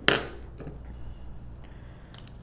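A single sharp clack as the acrylic stamp block is put down on the wooden desk just after stamping, followed by faint paper handling.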